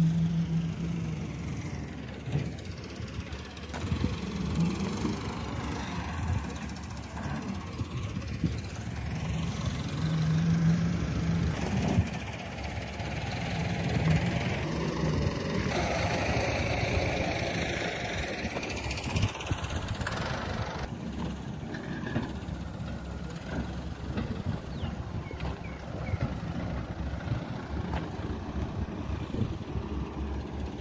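An engine running outdoors, a steady low hum under a bed of open-air site noise, which shifts in level and character several times.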